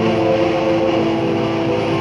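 Melodic black metal from a 1997 demo recording: a dense wall of distorted electric guitars and drums over steady held chords.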